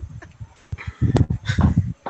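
Several people laughing over a video call, in short, low, irregular bursts that grow stronger in the second half.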